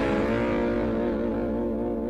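The final distorted electric guitar chord of a rock song, ringing out and slowly fading away.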